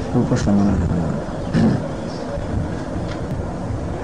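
A lecturer's voice in short fragments near the start and again at about a second and a half, over a steady low rumble and hiss that runs under the whole recording.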